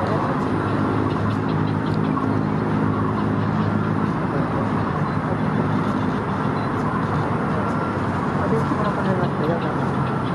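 Steady low hum of a running vehicle engine with road traffic, and people's voices in the background.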